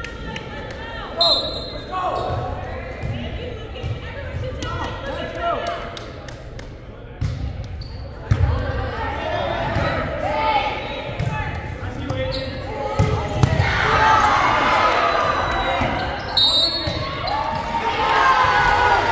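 Volleyballs being hit and bouncing on a hardwood gym floor, with players and spectators calling out and chattering, all echoing in a large gymnasium. The voices and ball hits grow busier and louder in the second half.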